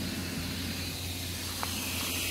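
Steady low hum and hiss of outdoor background noise, with one faint click about one and a half seconds in.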